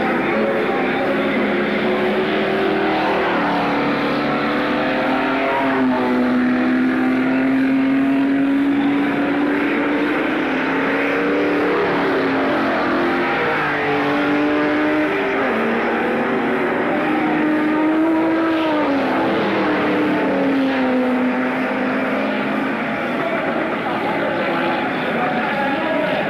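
Stock car engines running on the oval, their pitch holding steady and then rising and falling as the cars accelerate, lift off and pass.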